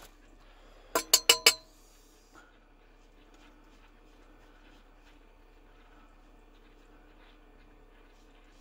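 Four quick metallic clinks with a short ring, about a second in, as a safety razor is knocked against the rinse pot; after that only a faint steady hum.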